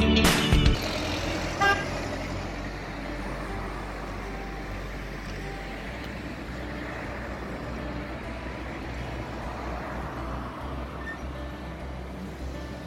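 Intro music cuts off in the first second, giving way to steady road-traffic noise with a low rumble. A single short car-horn toot sounds about two seconds in.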